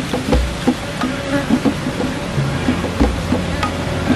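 Wild bees buzzing around their opened nest, with scattered clicks and a couple of dull thumps from hands working in the soil.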